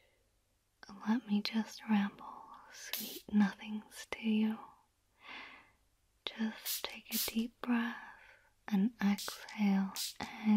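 Only speech: a woman whispering softly close to the microphone in short phrases, starting about a second in, with brief pauses.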